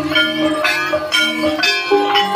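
Javanese gamelan of an ebeg (kuda kepang) troupe playing: bronze gongs and kettle gongs struck in a steady pattern, their tones ringing on, with the drum silent.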